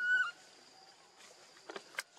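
A baby macaque gives one short, high-pitched squeak right at the start, a single tone that dips at its end. A few faint clicks follow near the end.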